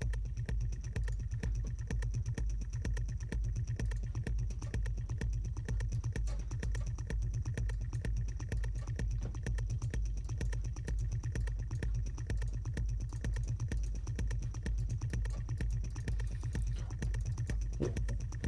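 Electronic techno background music with a steady, driving beat and a heavy pulsing bass.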